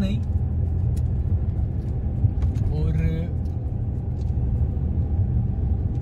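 Maruti Alto 800's three-cylinder petrol engine and road noise heard inside the cabin while driving: a steady low drone.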